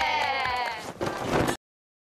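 Several people holding one long cheering shout together, its pitch sagging slightly as it fades just before a second in. A short noisy burst follows, and the sound cuts off abruptly about a second and a half in.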